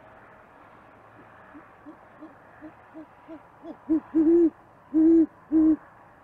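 Great horned owl hooting: a run of about seven short, soft, low notes that grow steadily louder, then four loud hoots near the end, the second one the longest.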